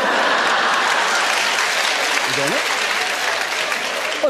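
Live audience applauding, a steady, dense clapping that holds at an even level; a short voice cuts in briefly about two and a half seconds in.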